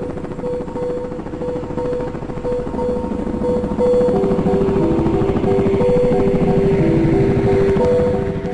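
Helicopter rotor noise, a fast steady chop, under background music of held notes that step in pitch. Both grow louder about four seconds in.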